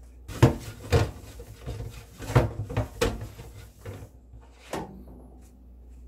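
Oiled paper towel scrubbed around the inside of a new stainless-steel wok in several irregular rubbing strokes, the last one near the end, wiping off the residue of factory polishing compound.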